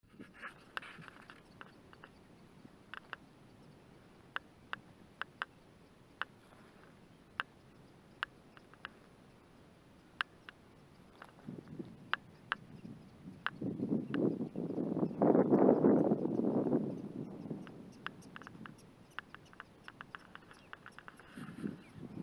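Prairie dogs giving scattered short, sharp barks, a few seconds apart and in quicker runs near the start and end. In the middle a rush of wind on the microphone swells up for several seconds and is the loudest sound.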